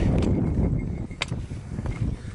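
Wind buffeting the camera microphone, an uneven low rumble, with one sharp click a little over a second in.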